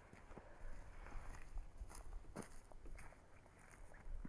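Faint footsteps on dry, gravelly ground, about two steps a second, over a low rumble of wind on the microphone.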